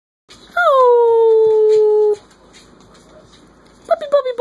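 A three-week-old Corgi puppy howling: one long call that drops in pitch at the start, holds steady for about a second and a half, then stops abruptly. Right at the end a second, wavering howl begins.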